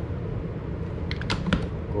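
A few quick clicks of buttons being pressed on a ship's auto-telephone keypad, dialling the engine room, about a second in. A steady low hum runs underneath.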